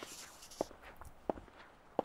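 Soft footsteps of shoes on a hard stone pavement, a step about every two-thirds of a second at an easy walking pace.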